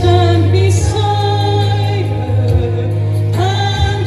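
A woman singing a gospel song into a handheld microphone, holding long notes, over instrumental accompaniment with a steady bass.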